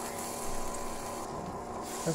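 Butter sizzling steadily as it melts in a hot stainless steel kadai, over a steady hum from the induction cooktop.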